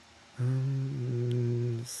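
A man humming one long, steady 'mmm' of about a second and a half, its pitch stepping slightly lower partway through.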